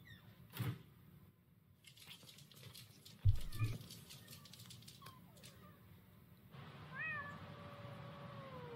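A faint cat meow, one long drawn-out call that rises and then slides down in pitch, about seven seconds in. A dull thump a little after three seconds is the loudest sound, with soft scattered clicks before it.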